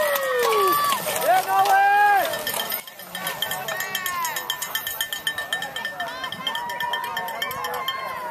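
Spectators yelling drawn-out cheers as a pack of cyclocross riders passes, over fast, continuous cowbell ringing. The shouting is loudest in the first three seconds and then drops away.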